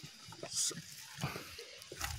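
Soft scattered knocks and rustles of a camera being handled and picked up, with a brief hiss about half a second in.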